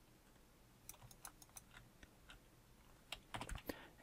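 Faint, scattered clicks of computer keyboard keys being pressed, a few about a second in and a quicker cluster near the end.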